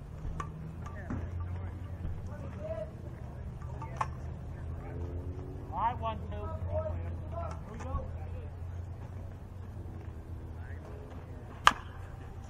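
Distant players' voices over a steady low hum, then, just before the end, one sharp crack of a swing at a pitch at home plate, far louder than anything else.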